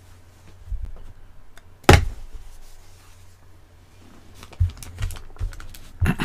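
A handful of separate clicks and knocks from computer keyboard and mouse use, the loudest a sharp knock about two seconds in, over a low steady electrical hum.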